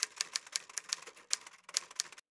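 Typing sound effect: a quick, uneven run of keystroke clicks, several a second, accompanying text typing onto the screen.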